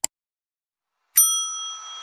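A quick double mouse-click sound effect right at the start, then a single bright notification-bell ding about a second in that rings on and fades.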